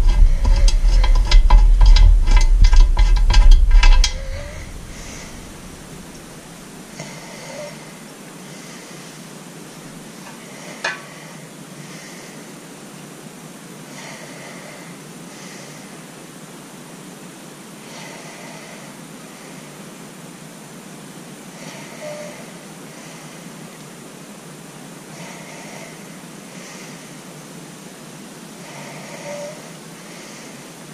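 Close handling noise from working small hardware on an outboard's plastic top cowl latch. For the first four seconds there is a heavy rumble with rapid clicking. After that there is a steady low hiss with a few faint clicks of small parts, and one sharper click near the middle.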